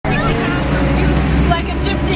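A tank's engine running steadily: a low, even drone with voices talking over it.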